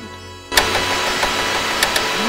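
Television-static hiss sound effect that cuts in sharply about half a second in, with a few sharp clicks, laid over background music.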